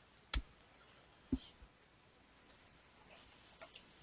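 Two sharp clicks about a second apart, then a run of faint taps: a computer mouse and keyboard in use while a web address is typed in.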